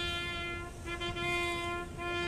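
A solo brass instrument playing a slow ceremonial call, holding one long low note that is briefly re-sounded about a second in.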